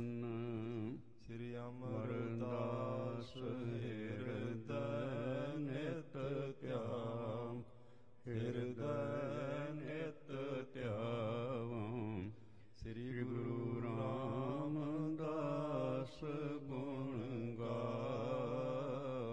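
A man chanting sacred verses in a slow melodic chant, with long held notes wavering in pitch. The phrases are broken by short pauses, about a second in, near eight seconds and near twelve and a half seconds.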